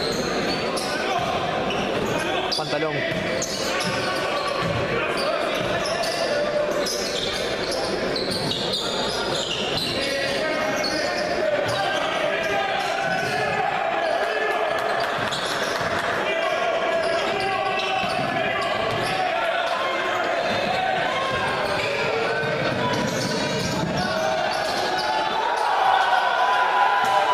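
Live court sound of an indoor basketball game in a reverberant gym hall: a basketball bouncing on the wooden floor and shoes squeaking, over a steady mix of crowd and player voices.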